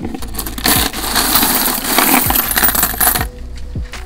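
A pile of loose coins in a plastic bucket being stirred by a gloved hand, a dense clinking and jingling of metal on metal. It starts about half a second in and stops abruptly after about three seconds.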